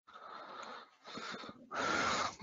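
Breathing close to a microphone: three noisy breaths, the last one louder.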